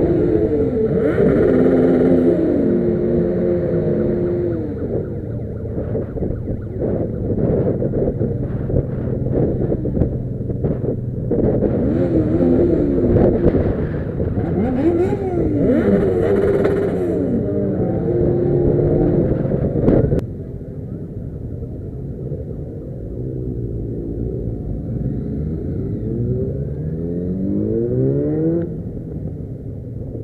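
Motorcycle engines in a slow group ride heard up close from one of the bikes: engines running with repeated rises and falls in pitch as the riders open and close the throttle and change gear. The sound turns noticeably quieter about two-thirds of the way through.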